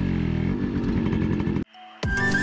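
Yamaha motorcycle engine running at steady revs close to the microphone, cutting off suddenly near the end.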